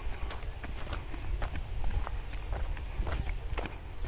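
Footsteps on dry, bare soil: irregular short crunches a few times a second, over a steady low rumble.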